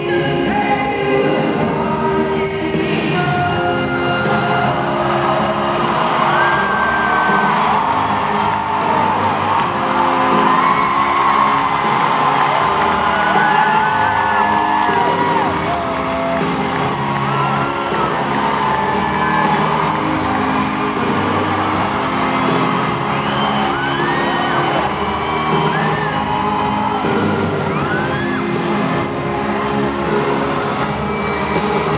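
Live pop ballad from an arena sound system, a band under a singer's voice. Fans close by whoop and shriek throughout.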